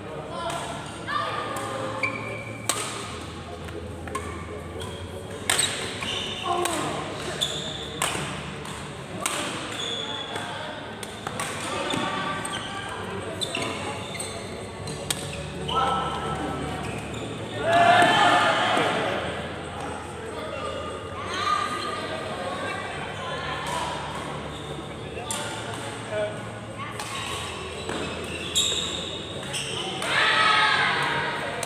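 Badminton play: rackets striking the shuttlecock with sharp cracks and shoes on the wooden court floor, over indistinct chatter and calls from people around the hall, with a louder burst of voices about 18 seconds in.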